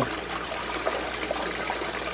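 Water from a submersible pump running steadily down a metal sluice box and splashing back into the tub below.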